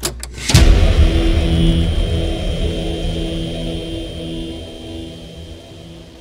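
Logo intro sting: a sudden deep bass hit about half a second in, followed by a low, pulsing, engine-like drone that fades out over the next few seconds.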